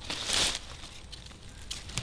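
A brief rustle, about half a second long, shortly after the start, then a quiet outdoor background.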